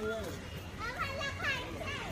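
A man's brief word, then high-pitched children's voices calling and chattering for about a second, over a steady low background hum.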